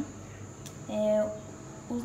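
A woman's voice: one short, drawn-out syllable about a second in, with a single faint click just before it.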